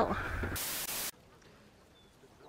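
A burst of hissing white-noise static, like an edited-in TV-static effect, cutting off sharply about a second in and leaving only a faint hiss.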